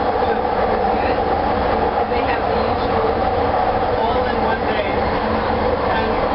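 Bombardier Mark II SkyTrain car running steadily along the guideway, heard from inside the car: a constant hum and rumble from its linear induction motor and running gear.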